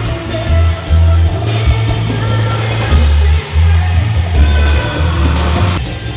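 Live bachata band music played loud through a stadium sound system, with a heavy pulsing bass and drums.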